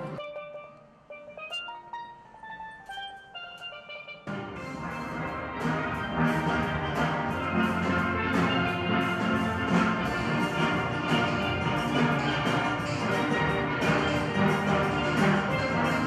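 A single steel pan plays a run of separate notes stepping down in pitch; about four seconds in, a full steel band of many pans comes in suddenly and plays on, loud and dense, to the end.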